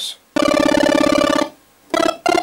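Nord Stage 3 Compact's synth section playing a pulse-wave chiptune sound: a held note driven by the arpeggiator at its Fast 1 rate, up and down over two octaves, giving a very rapid flutter of pitch steps. It sounds for about a second, and another note begins near the end. It is a bit fast.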